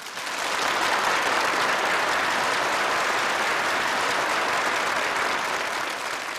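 Audience applauding, building up over the first second and then holding steady.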